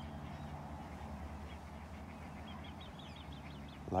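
A bird calling in a quick run of short, high notes, about five or six a second, from about a second and a half in until shortly before the end, over a steady low rumble.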